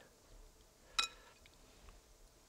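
A single light clink against a glass bowl of ice water about a second in, with a brief ring; otherwise quiet room tone.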